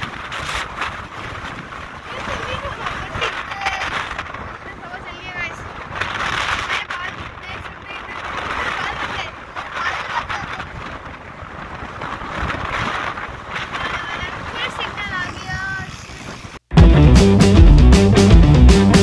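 Wind rumbling on a phone microphone, with children's voices and laughter over it. About three-quarters of a second before the end, loud music cuts in abruptly.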